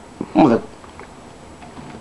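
A man's brief wordless vocal sound about half a second in, sliding down in pitch, then quiet room tone.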